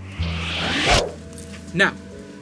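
A zip-like swish that rises in pitch and loudness over about a second, then cuts off suddenly, over background music.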